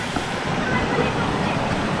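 Shallow river rushing steadily over a rocky riffle: a continuous, even hiss of running water.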